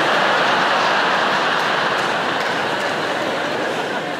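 A large theatre audience laughing together in one loud, sustained wave that eases slightly near the end.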